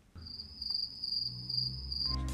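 Cricket chirping used as a comedy sound effect: a steady, fast-pulsing high trill that cuts off suddenly at the end, over a faint low rumble.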